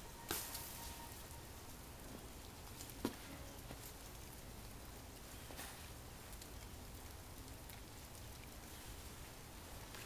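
Faint, steady outdoor hiss with a low rumble, broken by a few soft clicks: one just after the start and one about three seconds in.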